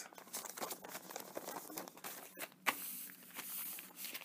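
Faint rustling and crinkling of paper as a colored paper cutout is pressed and smoothed onto a brown paper bag, with a slightly louder rustle about two and a half seconds in.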